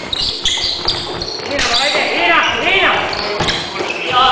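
Basketball bouncing on a hardwood gym floor in a few sharp, irregular thuds, with players calling out during play, echoing in the large hall.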